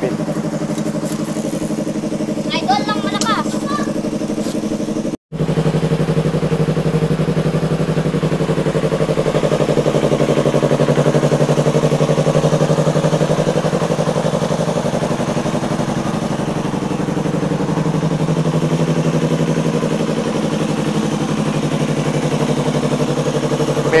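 Yamaha R3's parallel-twin engine idling steadily through an aftermarket SC Project slip-on exhaust, with no revving. The sound cuts out for an instant about five seconds in and comes back slightly louder.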